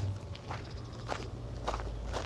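Footsteps of a person walking at an even pace, about two steps a second, over a steady low rumble.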